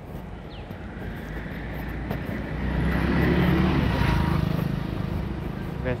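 A road vehicle passing by on the street, its engine and road noise swelling to a peak about three to four seconds in and then fading.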